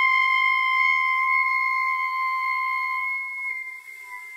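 Flute holding one high note steadily. It fades near the end as a faint lower tone comes in.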